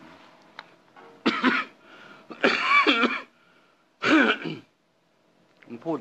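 A man clearing his throat and coughing in three short bouts about a second apart, the last ending a little after four seconds in.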